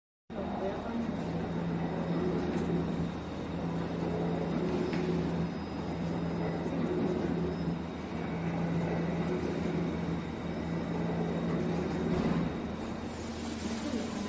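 Gauze packing machine running: a steady mechanical din with a low hum that cuts in and out in a regular cycle about every one and a half seconds.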